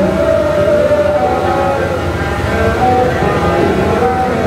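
Two bowed fiddles playing long, held notes that slide slowly in pitch, with a man's voice singing along.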